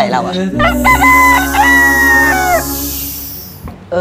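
A rooster crowing: one long cock-a-doodle-doo starting just under a second in and falling away at its end.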